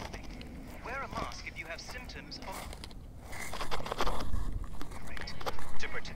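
A faint voice from a radio broadcast picked up by a toy-train crystal radio, with plastic rubbing and handling noise as the two halves of the radio are pushed back together, louder in the last couple of seconds.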